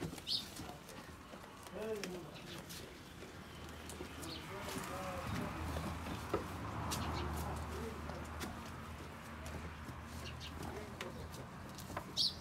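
Small birds chirping in short high calls, with a few low cooing calls and a low steady hum through the middle.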